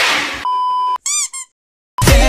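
Meme sound-effect audio: a short noisy burst, then a steady high beep like a censor bleep for about half a second, followed by two quick squeaky chirps that each rise and fall.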